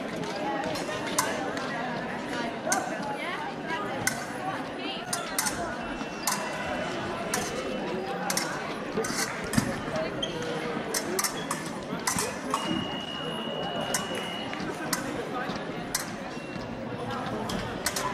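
Reverberant sports-hall chatter with frequent light metallic clicks and clinks from épée blades and footwork on the metal fencing pistes. A steady high electronic beep from a fencing scoring machine sounds about twelve and a half seconds in, lasting about a second and a half.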